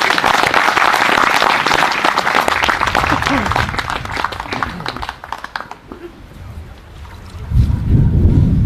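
Applause from a crowd of guests: a few seconds of dense clapping that thins out and dies away about five seconds in. A low rumble starts near the end.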